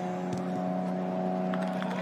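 Steady low motor hum with several steady overtones, like an engine running at an even speed. Its higher tones fade out near the end.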